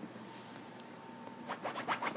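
American Eskimo puppy's paws scratching quickly at a fabric couch cushion, digging to bury a treat. The scratching starts about one and a half seconds in as a fast run of short strokes.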